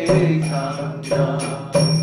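A man singing a devotional chant in long held notes, accompanied by hand strokes on a mridanga drum. The drum strokes fall at the start, about a second in, and near the end.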